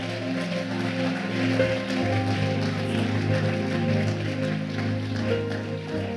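Church music playing held chords, the bass shifting to a lower chord about two seconds in, under the congregation clapping.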